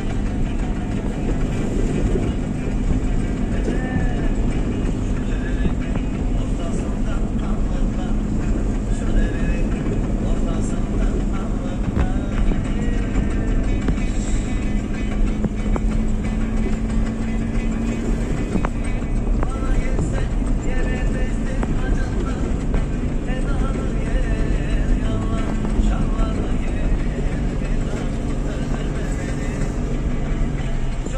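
Steady drone of vehicle engines, a combine harvester travelling just ahead of a slowly following car, with music with a singing voice playing over it.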